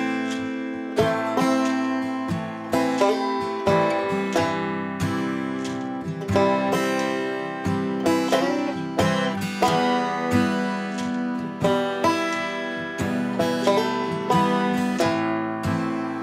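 Instrumental folk music on plucked acoustic strings: notes picked about once or twice a second, each ringing and fading, with no singing.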